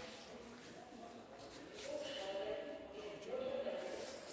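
Faint, distant voices in a large hall, a low murmur that grows slightly louder about two seconds in.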